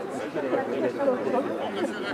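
Overlapping chatter of several people talking at once, close to the microphone.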